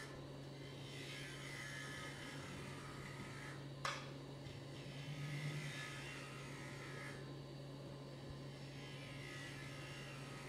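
Wood lathe running with a steady hum while a carbide-tipped turning tool cuts the spinning wood, throwing shavings; the cutting noise swells and fades with each pass of the tool. A single sharp click about four seconds in.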